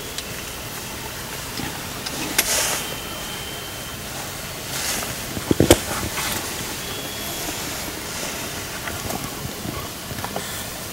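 Steady background hiss with rustling and a few knocks from movement inside a fabric hunting blind. The loudest sound is a quick cluster of knocks about five and a half seconds in.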